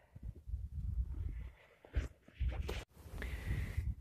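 Handling noise of a biscuit tin being pushed into a fabric rucksack: irregular low rustling and bumps close to the microphone. It cuts off suddenly about three seconds in, and a steady hiss follows.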